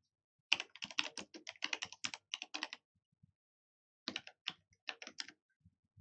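Typing on a computer keyboard: a run of quick keystrokes lasting about two seconds, a pause, then a second, shorter run of keystrokes.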